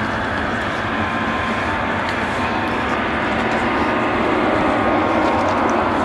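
Boeing VC-25A (Air Force One 747) taxiing, its four General Electric CF6 turbofans running at low thrust. It is a steady rushing sound with a faint whine, growing a little louder about two-thirds of the way through.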